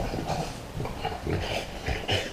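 A French bulldog and a smaller black-and-white dog play-wrestling, making a quick, irregular string of growls and grunts.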